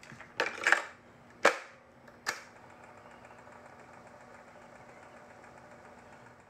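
Cassette tape deck being operated: a run of sharp mechanical clicks and clunks, the loudest about a second and a half in. From about two and a half seconds in there is a steady faint hiss with a low hum, as of tape running.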